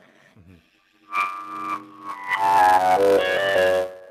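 Clarinet played over a video call. About a second in it sounds one held note, then a quick run of changing notes that grows louder toward the end.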